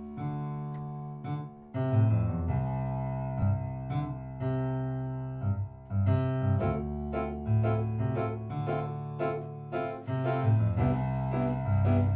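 Keyboard music from a rock band's original song: sustained chords struck about once a second over a low bass line. About ten seconds in, a high hissing layer with repeated ticks comes in.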